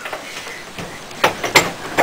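Low room noise with two short thumps, about a second and a half in, a third of a second apart.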